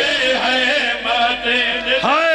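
A man's voice chanting a majlis recitation through a public-address microphone, in held, wavering melodic phrases.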